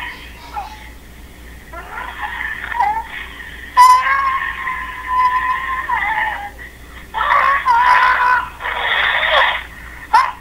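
A high-pitched voice making several drawn-out, wavering calls without clear words, with one long held note near the middle.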